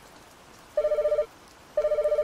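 A telephone ringing: two short electronic trilling rings of about half a second each, the first starting about three-quarters of a second in and the second a second later.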